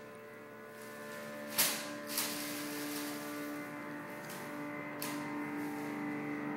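A steady electronic drone of several held tones, the piece's programmed soundtrack, swelling slightly about a second in. Three short sharp noises cut through it, about one and a half, two and five seconds in.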